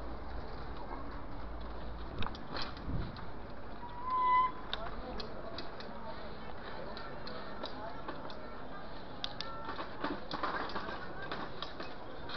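Bicycle rolling over paving slabs, with scattered clicks and rattles from the bike against street noise with voices. A short high tone about four seconds in is the loudest moment.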